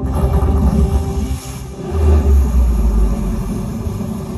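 Loud deep rumble with a rushing noise played over the show's loudspeakers between passages of music: the rush fills the first half, and the rumble swells about two seconds in, then fades.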